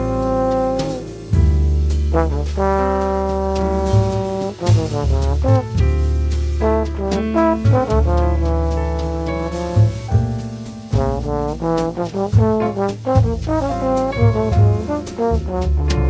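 Big band jazz with trombones out front: held brass chords over long low bass notes, broken by quick runs of short notes through the middle and end.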